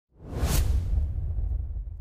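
Whoosh sound effect for an animated title, swelling to a peak about half a second in, over a deep rumbling boom that slowly fades away.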